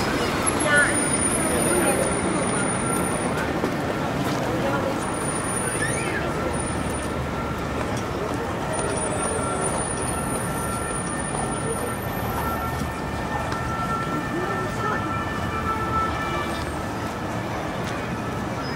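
City street ambience: many voices talking in the background over passing traffic.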